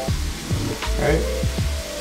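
Chicken sizzling as it sautés in olive oil in a pan, under background music.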